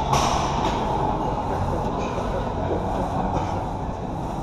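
Busy gym room noise: a steady din of distant voices and equipment, with a brief sharp clatter at the very start.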